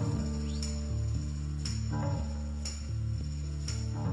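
A live rock band playing a slow, droning instrumental intro before the vocals. Sustained low tones run under a bass line that steps to a new note about once a second, with a sharp high hit about once a second.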